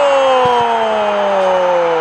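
A football TV commentator's long, drawn-out goal cry, one held shout slowly falling in pitch, celebrating a goal.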